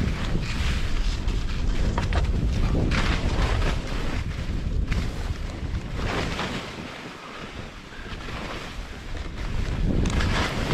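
Skis scraping and hissing over chopped-up, mogully snow in a downhill run, in repeated bursts, with a quieter stretch about two-thirds of the way through. Heavy wind rumble on the microphone from the skier's speed lies under it throughout.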